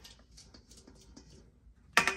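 Spatula scraping sauce from the inside of a stainless steel mixing bowl in soft, quick strokes. Just before the end comes one sharp metallic clank that rings on briefly.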